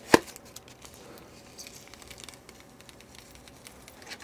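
A single sharp knock just after the start, then faint scattered rustling and light clicks as an aluminium amplifier panel in a plastic bag is handled on the bench.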